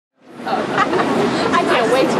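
Several women chattering over one another, the sound fading in from silence over the first half second.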